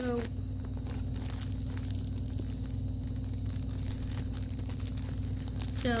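Crinkly wrapper of a trading-card pack being torn and crumpled open by hand, in scattered short crackles. A steady low hum runs underneath.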